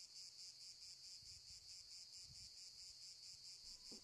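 Faint, high-pitched insect chirring with a fast, even pulse.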